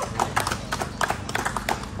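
Scattered applause from a small group of people: distinct, irregular hand claps.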